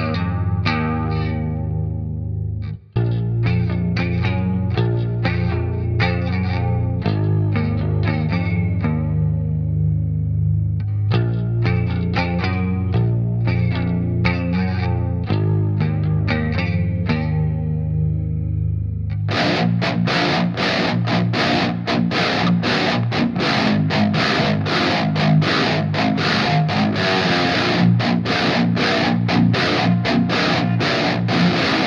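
Eight-string electric guitar played in the low register around a low G-sharp, first with a clean tone in short plucked phrases, broken by a brief dropout about three seconds in. About nineteen seconds in it switches to a heavily distorted overdrive tone playing a fast, evenly repeated riff.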